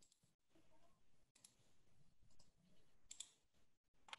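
Near silence: faint room tone with a few soft clicks, one about a second and a half in and a quick cluster around three seconds in.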